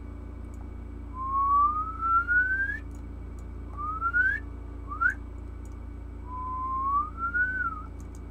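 A person whistling four upward-sliding notes: a long slow rise, two quicker short rises, then a long rise that dips slightly at its end.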